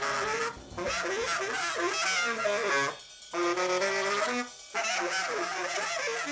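Saxophone improvising free-jazz phrases, the pitch bending and sliding, with short breaks between phrases about half a second, three seconds and four and a half seconds in.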